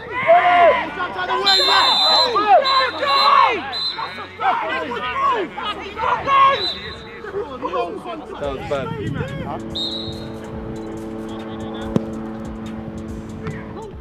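Several men shouting and yelling together after a sliding tackle, with a shrill referee's whistle blowing steadily for a couple of seconds from about a second and a half in. From about two-thirds of the way through, a steady held musical chord takes over.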